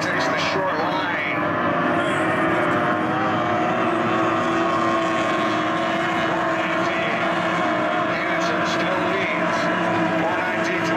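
Outboard engines of several SST 60 racing tunnel boats running flat out together, a steady drone of overlapping engine notes.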